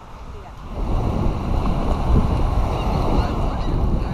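Wind buffeting the microphone over breaking surf, getting loud about a second in, with faint high children's shouts near the end.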